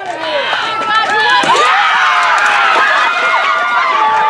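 Softball spectators and players cheering a hit: many high voices yelling and screaming at once, overlapping.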